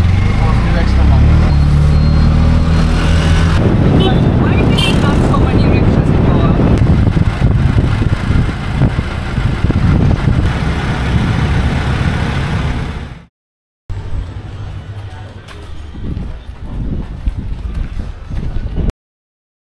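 Auto-rickshaw engine pulling away, its pitch rising over the first few seconds, then running steadily under loud wind and road noise in the open cab. Near the end it cuts off suddenly, and quieter, uneven outdoor sound follows.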